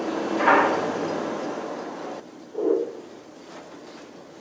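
A door closing: a sharp knock about half a second in that rings on for about a second, then one duller thump a couple of seconds later.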